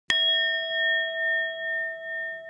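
A single bell-ding sound effect, struck once just after the start and ringing on with a slow wavering: the notification-bell chime of an animated subscribe button.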